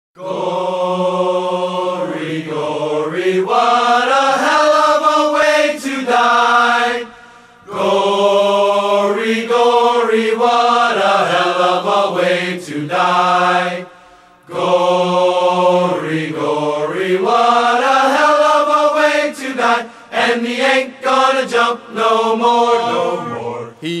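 Wordless chant-like singing in long, sustained phrases, with short breaks about seven and fourteen seconds in, forming the opening of a song recording.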